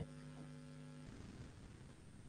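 A faint steady hum made of a few tones, which cuts off about a second in, leaving faint room noise.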